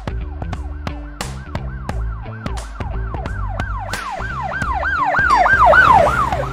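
Outro music with a beat and bass line, overlaid by a siren sound effect whose pitch sweeps down rapidly, nearly four times a second, growing louder toward the end.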